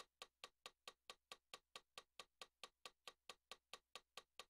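Faint metronome clicking steadily at about four and a half clicks a second, with no notes played over it.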